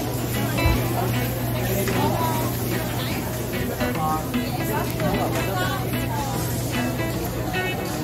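Chatter of many voices in a busy food court, with music playing and a steady low hum underneath.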